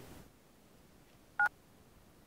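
A phone's single short electronic beep of two pitches at once, about a second and a half in, as the call is ended.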